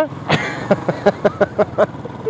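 A man laughing in a quick run of short laughs for most of the two seconds, over the steady running of a Royal Enfield single-cylinder motorcycle and wind noise from riding.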